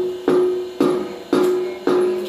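A steel plate (thali) struck rhythmically, about two strikes a second, each strike ringing on with one clear metallic tone that fades before the next: the plate-beating done at Dev Uthani to wake the gods.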